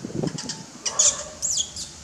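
Newborn baby macaque squeaking and squealing in a series of short, very high-pitched cries, several with quick falling glides, the loudest about a second in.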